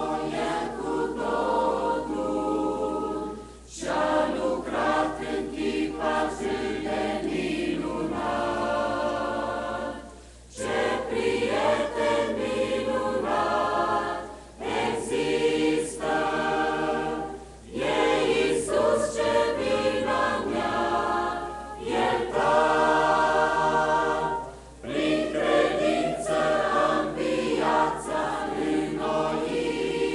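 Mixed-voice church choir singing a hymn in parts, in sustained phrases separated by brief pauses every few seconds.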